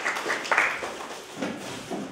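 Audience applause dying away within the first second, followed by a few faint low room sounds.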